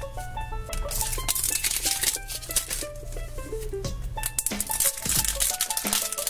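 Light background music with notes held steady, over plastic shrink-wrap crinkling and tearing in short bursts as it is peeled off a toy capsule ball.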